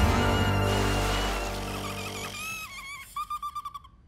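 Cartoon soundtrack music and effects: a low rumble fades over the first two seconds under high, wavering tones. A short warbling tone follows near the end.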